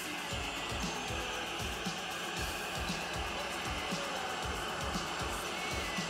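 Background music at a steady, moderate level with no loud events.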